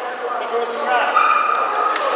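Indistinct voices in a large echoing hall, with a high-pitched held call a little past the middle and a sharp click near the end.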